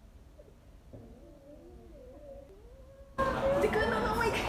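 Faint, muffled, squeaky giggling, stifled behind hands and wavering up and down in pitch. The sound is turned down and dulled until louder laughter and talk cut back in sharply about three seconds in.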